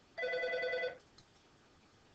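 A short electronic tone, held steady for just under a second, about a fifth of a second in.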